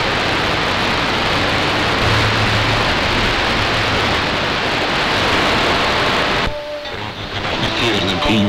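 Shortwave receiver in AM mode hissing with band noise from its speaker while being tuned in 10 kHz steps around 13.8 MHz, with a faint steady low hum underneath. About six and a half seconds in, the hiss cuts off and a broadcast station's audio comes in.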